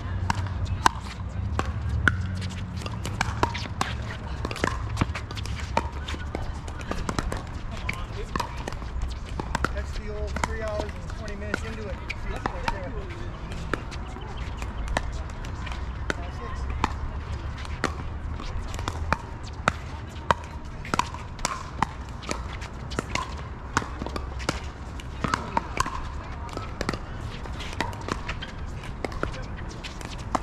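Pickleball play: sharp pops of paddles hitting the plastic ball and the ball bouncing on the hard court, coming at an irregular pace throughout, over a steady low rumble.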